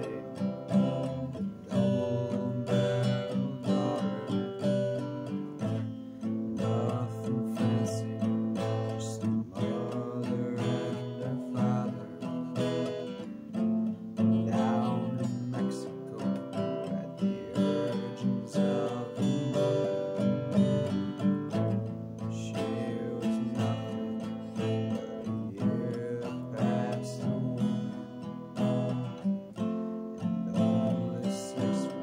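A guitar strummed and picked steadily through a song.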